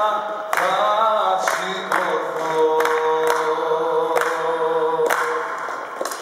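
A man singing unaccompanied into a handheld microphone, sliding between notes and holding one long note through the middle, over a sharp beat about twice a second.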